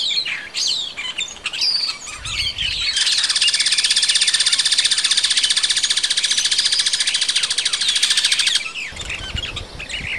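Several wild birds chirping and calling. From about three seconds in to about eight and a half seconds, a loud, even, rapid rattling buzz takes over, then stops suddenly and the chirping carries on.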